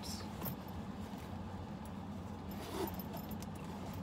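A few soft clinks of a leather handbag's metal hardware and rustling as the bag is handled and held open, over a steady low hum.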